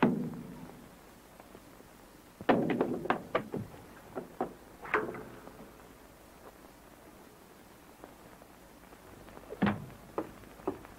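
Thuds and knocks of a fistfight scuffle on an old film soundtrack. A heavy blow lands right at the start, a quick flurry of knocks follows a couple of seconds later, and single hits come around the middle and near the end.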